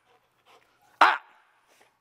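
Labrador retriever barking once, a short bark about a second in.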